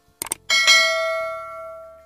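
Subscribe-button sound effect: two quick mouse clicks, then a notification bell struck twice in quick succession, ringing on and fading away over about a second and a half.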